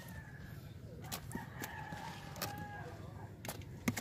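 A rooster crowing, one held call from about a second in to about two and a half seconds. Several sharp taps and knocks come from fish being handled on the boat's deck.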